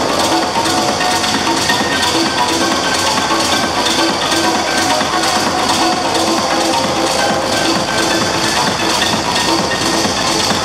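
Techno from a DJ set, with a dense, steady pattern of quick percussive ticks over a repeating mid-pitched synth note.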